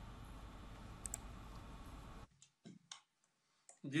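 Faint steady background hiss that cuts off abruptly about two seconds in, followed by a few short, faint clicks in near silence.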